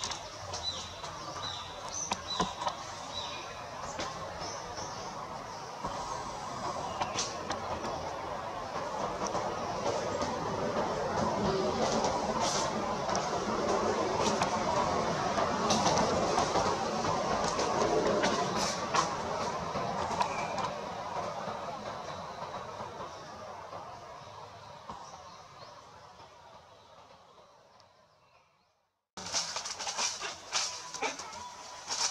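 Outdoor background noise that builds to a peak mid-way, then fades away to silence just before the end, with a few short, faint high chirps in the first few seconds and scattered light clicks.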